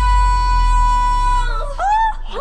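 A woman singing one long, high held note over backing music with a bass line. The note stops about one and a half seconds in and gives way to a short vocal slide up and down.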